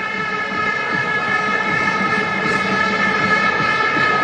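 Stadium crowd noise under a steady, unbroken drone of many horns blown together, holding several fixed pitches at once.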